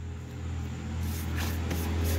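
Salt being spooned onto a flank steak in a plastic bowl and rubbed into the meat by hand, a soft gritty scraping that grows louder about a second in, over a steady low hum.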